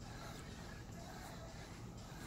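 Faint gym room noise with soft, short sounds about once a second, in time with a man's steady air squat reps.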